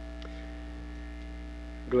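Steady electrical mains hum with a few faint steady tones above it, the background hum of the recording.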